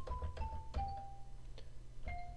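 Single xylophone notes from the Virtual Drumline sample library, sounded one at a time by Sibelius 5 as each note is entered. They step down in pitch, four in the first second, each starting with a light click. It is still the xylophone sound because the glockenspiel patch has not yet been loaded at the instrument change.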